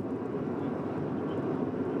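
Steady drone of a car driving on a highway, heard from inside the cabin: road and engine noise, strongest low down, with no distinct events.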